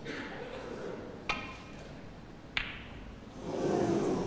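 Two sharp clicks of snooker balls about 1.3 seconds apart: the cue tip striking the cue ball, then the cue ball hitting a red. Near the end, crowd noise in the hall swells.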